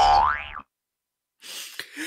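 A man's voice giving a short, loud whine that rises in pitch right at the start, then a pause, then breathy laughter beginning near the end.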